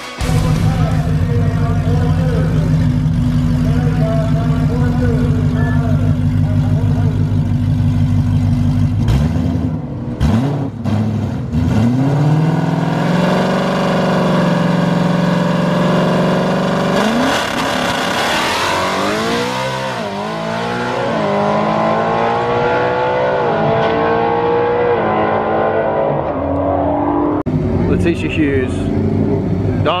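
Ford Mustang GT 5.0 V8 drag cars: a steady idle for several seconds, then revs blipped up and held high, then a launch from about 17 s, the engine pitch rising through several gears, each shift dropping and climbing again, fading away near the end.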